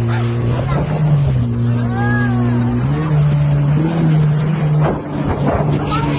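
Motorboat engine droning steadily as it tows an inflatable ride over the water, its pitch stepping up about three seconds in. A rising-and-falling voice cry about two seconds in.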